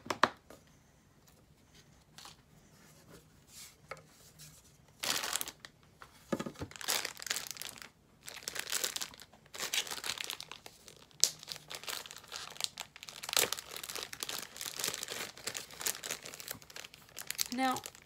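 A thin plastic packet crinkling and being torn open by hand, in irregular bursts from about five seconds in. Right at the start there are a couple of sharp scissor snips.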